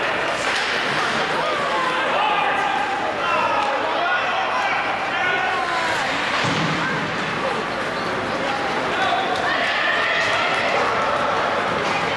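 Shouts and calls from players and spectators in an indoor ice hockey rink, with a few knocks and thuds from sticks, puck and boards.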